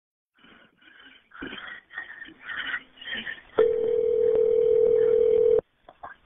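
Telephone line audio: a few short, muffled sounds, then one steady telephone tone lasting about two seconds that cuts off suddenly.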